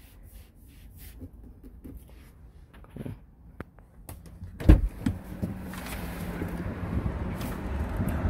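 Handling noises inside a car cabin: a few faint clicks, then a single heavy thump a little past halfway. After the thump a steady low hum sets in and grows gradually louder.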